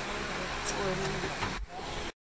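Steady outdoor background noise with faint, indistinct voices, and a low thump near the end.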